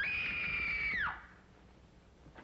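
One high-pitched scream from a person: it shoots up in pitch at the start, holds steady for about a second, then drops away and stops.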